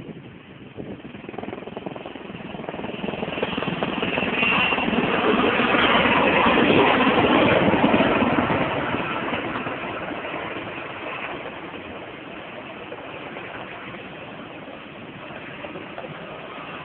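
Erickson S-64 Air-Crane firefighting helicopter passing low overhead, its twin turbine engines and rotor running. The sound swells over the first several seconds, is loudest around six to eight seconds in, then fades to a steadier, lower level as the helicopter moves off.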